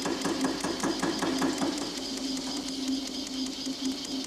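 Eckold Kraftformer cold-forming machine hammering an aluminium angle section with its beak-shaped tool, stretching it into a curve: rapid, even strokes over a steady motor hum.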